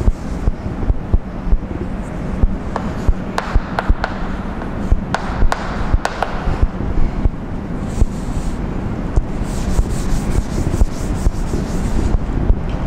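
A cloth duster rubbing chalk off a blackboard, with a run of sharp chalk taps and scrapes in the middle as chalk writes on the board.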